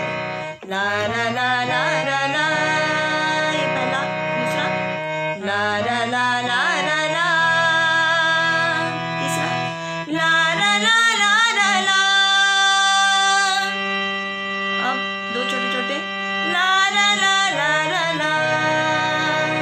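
A woman singing a wordless 'la ra la' refrain over sustained instrumental chords, in phrases with long held notes.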